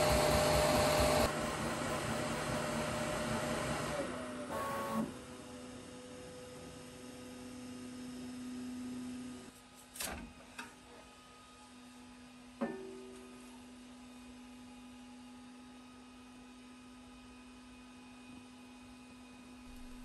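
QIDI Q1 Pro 3D printer running, its fans and stepper motors making a steady whir and hum, loudest in the first second and quieter after about four seconds. A couple of sharp clicks come about halfway through.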